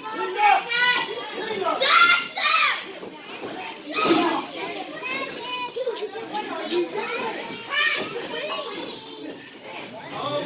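Children's high voices shouting and calling out over one another, with some adult speech mixed in.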